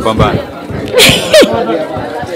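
A woman laughing: two sudden breathy bursts about a second in, each ending in a short falling squeal.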